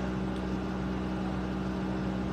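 Steady low hum at an unchanging pitch, like an appliance or machine running in the room.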